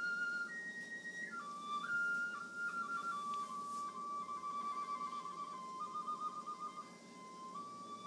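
Live Mongolian folk music: a single high, pure-toned melody of long held notes that step mostly downward, with a quick trill a little past the middle, over a faint low accompaniment.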